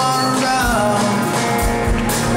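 Live band playing an instrumental passage on grand piano, saxophone, electric guitar and drums, with a melodic line sliding between held notes over a few drum hits.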